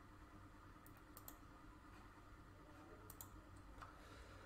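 Near silence with a few faint computer mouse clicks, a cluster about a second in and more around three seconds in.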